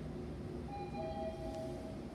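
A two-tone electronic chime, a higher note and then a lower one about a second in, both held, over the steady low hum of a Mitsubishi elevator car travelling up. It is the car's arrival chime as it nears its floor.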